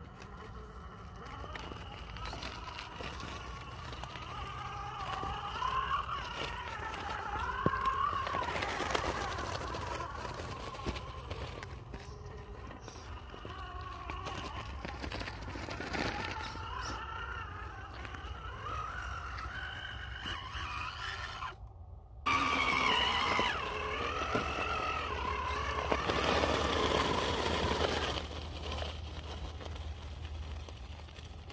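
Electric drive motor of a 1.9-scale RC rock crawler whining, its pitch rising and falling with the throttle as it climbs rock, with scattered clicks and scrabbles of tyres and chassis on stone. The sound drops out briefly about two-thirds of the way in and comes back louder.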